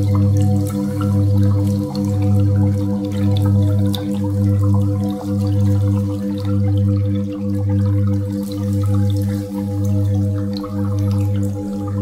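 Ambient sound-healing music built on steady tones, one near 528 Hz: a deep drone that swells and fades about once a second under higher tones that pulse rapidly, with dripping and trickling water mixed in.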